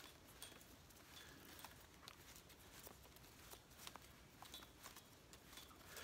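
Near silence, with faint scattered ticks and rustles as hibiscus-bark cordage is twisted by hand into a splice.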